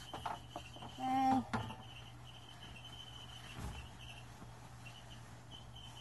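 A cricket trilling faintly in the background, a thin steady high tone in stretches with short breaks, over a low steady hum. A short voiced sound comes about a second in.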